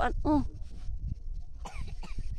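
Short vocal sounds from a person at the start and again briefly near the end, over a low, uneven rumble on the microphone.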